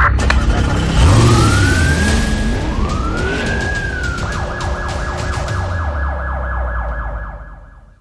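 Police siren sound effect: two slow wails rising and falling in pitch, then a fast repeating warble, over a loud deep bass rumble with sharp whooshing hits. It fades out just before the end.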